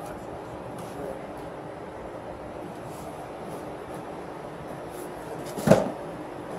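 A single heavy thump near the end as a heavy cardboard box is set down, over steady outdoor background noise.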